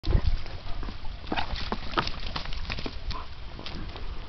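Irregular crackles and snaps of dry leaves and twigs being stepped on, over a low rumble.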